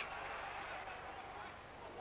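Faint, even background noise with no distinct events, fading slightly over the two seconds.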